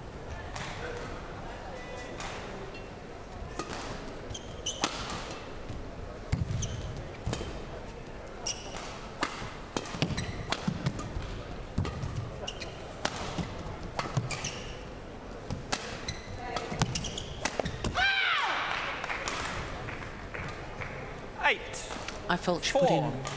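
Badminton rally: irregular sharp racket strikes on the shuttlecock and footfalls and shoe squeaks on the court floor, echoing in a large hall. About eighteen seconds in, the rally ends with a loud shout and a burst of crowd noise.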